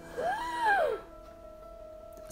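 A short, high vocal sound whose pitch rises and then falls, lasting under a second, followed by a faint steady held tone.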